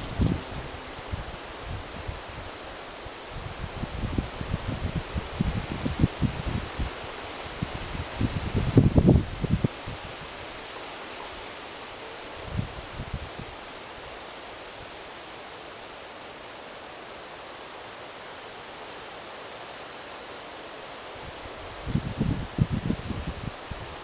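Wind gusting on the microphone: irregular low buffeting in bursts over a steady outdoor hiss, with a long calm stretch in the middle and another gust near the end.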